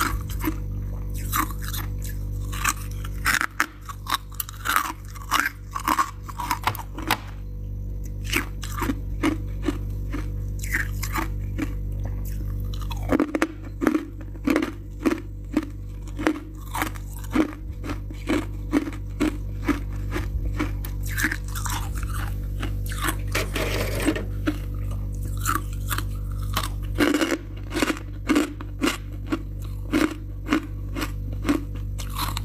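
Freezer frost being bitten and chewed close to the microphone: a long run of crisp, sharp crunches, a few each second, over a steady low hum.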